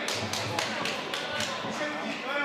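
Shouting voices in a fight arena with about half a dozen sharp smacks in the first second and a half, strikes landing during a Muay Thai exchange.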